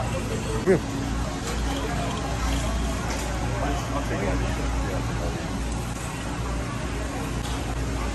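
Steady low hum of a large store interior with faint, indistinct voices in the background.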